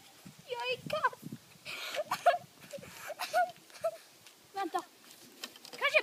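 High-pitched children's voices talking and calling out in short bursts, not picked up as words, with a brief hiss a little under two seconds in.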